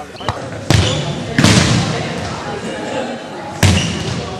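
Ball-game sounds: a ball being struck, with three loud sudden hits, the first just under a second in, the next about a second and a half in and the last near the end, and players' voices in between.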